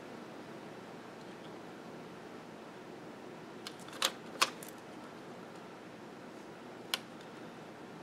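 Faint steady room hiss with a few short, crisp paper rustles and clicks about four seconds in and once more near seven seconds, from a paper planner sticker being handled between the fingers.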